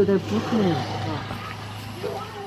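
A man's voice speaks briefly at the start, then a low steady hum carries on underneath and fades shortly after the end.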